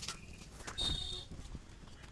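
A brief high-pitched animal call about a second in, over faint clicks.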